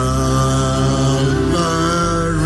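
Church worship music: a voice holding long sung notes that slide between pitches, over steady sustained chords.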